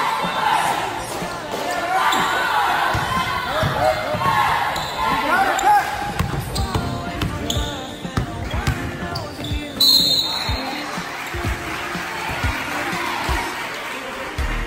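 A basketball bouncing repeatedly on a hardwood gym floor during play, with voices in the hall.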